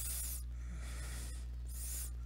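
Steady low electrical hum picked up by a desk microphone, with three soft hissing breaths close to it.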